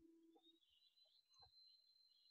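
Near silence: faint room tone with a thin, steady high-pitched whine and a couple of very soft knocks.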